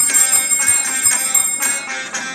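Small brass puja hand bell rung rapidly and continuously during the flame-waving (aarti), with a bright, ringing tone.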